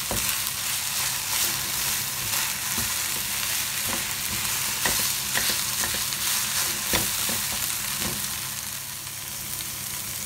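Instant noodles and vegetables sizzling as they are stir-fried in a non-stick wok: a steady frying hiss with a few short knocks and scrapes of the spatula against the pan, the sharpest about seven seconds in.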